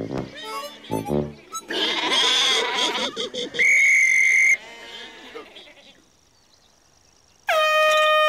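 Short cartoon animal vocal sounds and a brief clamour, then a whistle blown once in a steady shrill blast just under a second long. Near the end a hand-held air horn sounds one loud, steady blast of about a second.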